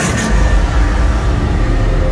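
Loud, steady low rumble from the haunted house's effects soundtrack, swelling a moment in.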